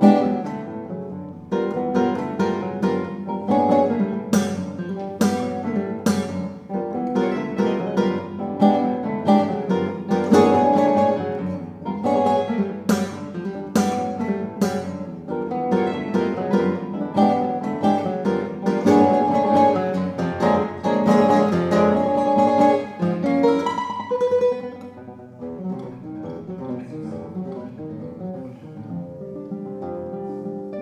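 Four classical guitars playing together live: a fast passage of sharp, accented plucked chords and notes, which drops to a quieter, softer passage about six seconds before the end.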